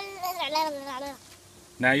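A small child's drawn-out, high-pitched voice, wavering in pitch and trailing off about a second in. A short spoken phrase follows near the end.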